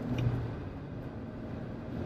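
Inside the cabin of a JAC T80 SUV at highway speed: steady road and tyre rumble with the 2.0 turbo inline-four engine humming underneath. The accelerator is floored for a kickdown, but there is no clear rise in revs yet, as the dual-clutch gearbox is slow to respond.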